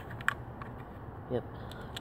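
A few light clicks from handling the open breech of a Daisy PowerLine 35 pump air rifle as a pellet is put into the chamber, the sharpest about a quarter second in, over a steady background hiss.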